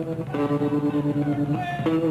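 Live band music led by electric guitar playing held chords, changing chord about a third of a second in and again near the end.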